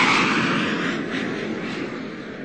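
A ride sound effect: a rushing whoosh, loudest at the start, that fades away over about two seconds.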